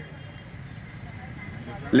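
Steady low background noise of the venue with a faint high hum, with no distinct event standing out.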